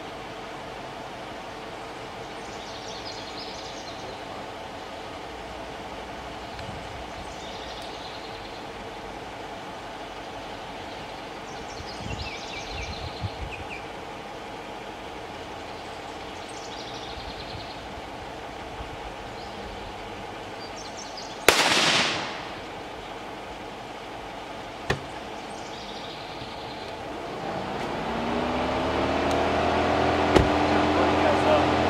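A single gunshot about two-thirds of the way through, a sharp crack with a short ringing tail, with a smaller sharp click about three seconds later. A bird chirps every few seconds, and an engine comes in near the end, rising in pitch and volume.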